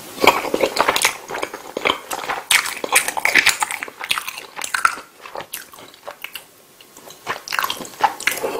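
Close-miked chewing of a mouthful of meatball pasta in tomato sauce, heard as a dense run of quick, wet mouth sounds. It thins out for a couple of seconds past the middle and picks up again near the end.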